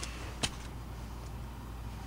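Steady low background hum with one short, sharp click about half a second in, as a baseball card in a plastic holder is handled.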